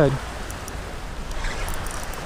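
Steady wind rumble on the microphone over the wash of choppy water, with a few faint ticks near the end.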